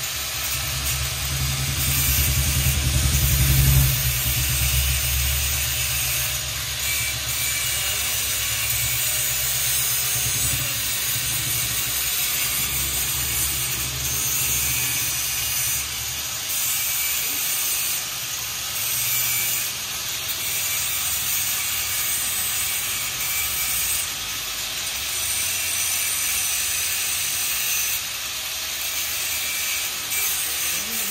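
Small corded handheld power tool working a metal exhaust part: a steady hissing whir, with a deeper rumble that is heaviest in the first few seconds.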